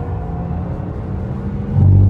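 Inside the cabin of a Porsche Taycan Turbo at speed on track: steady low tyre and road rumble under a faint electric motor whine that edges slightly upward. Near the end, a heavier low rumble as the car runs over the kerbs.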